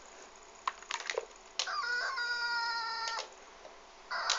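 A few light taps and scrapes of a dog's paw on a laptop about a second in, followed by a dog's long, high whine lasting about a second and a half.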